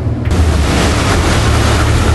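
Motorboat running underway: a steady low engine drone under loud rushing wind and water noise, which comes in suddenly about a third of a second in, with wind buffeting the microphone.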